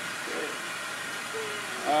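Steady hiss from a G-scale steam locomotive on the track, with a voice briefly audible over it.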